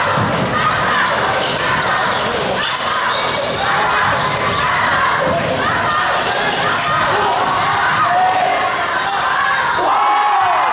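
A basketball being dribbled and bouncing on a hardwood gym floor during play, with players and spectators calling out over it.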